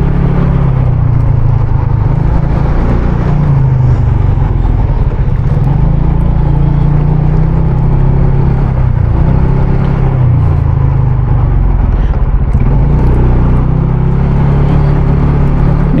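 Motorcycle engine running steadily at low speed, its pitch dipping and rising a little a few times with the throttle, over a steady rushing noise.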